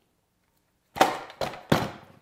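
Parts of a Bessey Revo parallel-jaw clamp clacking as the jaw is worked off along its bar: three sharp knocks in quick succession about a second in, each with a short ring.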